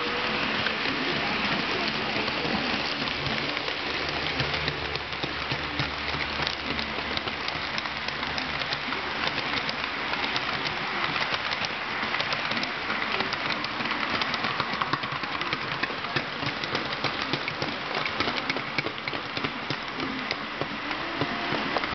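Model train running past: a long string of tank cars behind a small electric locomotive makes a steady clatter of many tiny clicks as the wheels roll over the track joints. A low hum is heard about four to eight seconds in.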